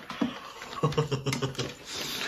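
A man laughing, with clicks and rustling as a ukulele's hard-shell case is opened.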